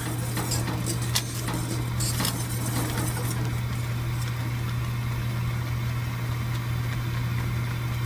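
A saucepan of thickened cornstarch-and-water paste bubbling as it nears a full boil on a gas burner while a wire whisk stirs it, over a steady low hum. A few light clicks of the whisk against the stainless pan come in the first few seconds.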